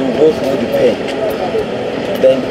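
Men's voices in conversation, a man talking in a group.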